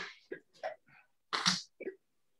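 Several short breathy bursts of a man's voice and breath, each cut off abruptly, heard choppy through a video call's audio.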